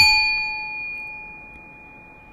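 A small metal bell struck once, ringing with several clear tones that fade away over about two and a half seconds.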